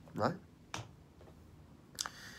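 Quiet room tone after a single spoken word, with a sharp short click near the end.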